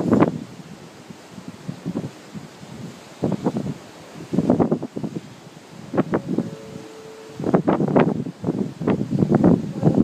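Wind buffeting a phone's microphone in irregular gusts, rising and falling every second or so. A brief faint steady tone sounds about seven seconds in.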